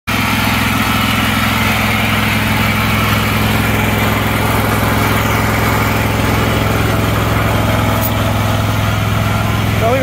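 A small petrol engine idling steadily, with an even low hum.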